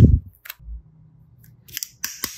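A dull thump as a lump of soft clay is set down on a glass plate, followed by a few small taps and light clicks near the end.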